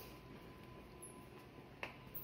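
Faint footstep on a polished tile floor: one sharp click near the end, over a faint steady room hum.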